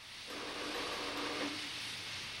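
Steady hissing and sizzling of steam as white-hot stones are plunged into the nearly boiling wort in a brew kettle, the Steinbier method of giving the brew its final heat. It starts a moment in and eases slightly near the end.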